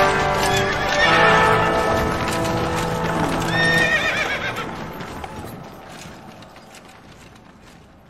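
Intro theme music with a horse whinnying and hoofbeats, the whinny wavering and falling about three and a half seconds in; it all fades out toward the end.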